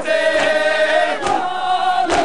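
A crowd of men chanting an Urdu nauha together in long, wavering sung notes. Regular strikes of matam (hands beating on chests) keep a steady beat just under a second apart.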